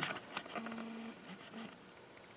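Faint handling noise as an overhead camera is repositioned over a paper worksheet: a sharp click at the start, then light scattered rustles and a brief faint hum around the middle.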